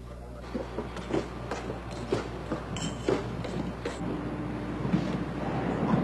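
Footsteps with the knocks and rattles of a heavy toolbox being carried, an uneven run of knocks. A steady hum joins about four seconds in.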